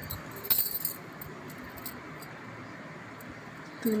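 A brief metallic clink and rattle of kitchen metalware at the gas stove about half a second in, then only a faint steady hiss.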